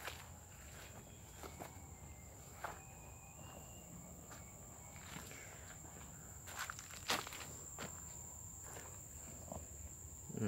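Faint footsteps and rustling of a person walking between rows of chili plants, with a few sharper clicks and scuffs, the loudest about seven seconds in.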